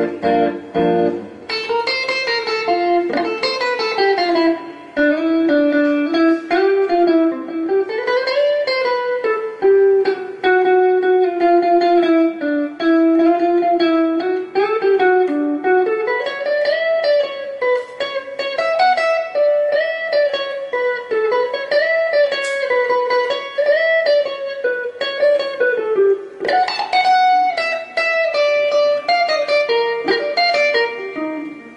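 Electric guitar playing a slow single-note lead melody, the notes held and sliding in pitch with bends and vibrato. A brighter, busier run of notes comes near the end.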